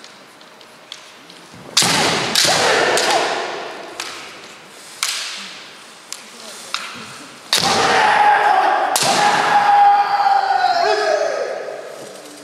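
Kendo exchange: sharp cracks of bamboo shinai striking and stamping footwork on a wooden floor, each burst with the fighters' kiai shouts. After the second burst one long shout is held and slides down in pitch for about three seconds, ending as the referees raise flags for a point.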